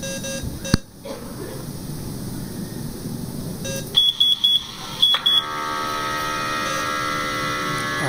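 Bedside patient monitor sounding: five short high beeps in quick succession about four seconds in, then a steady electronic alarm tone of several pitches that comes on and holds.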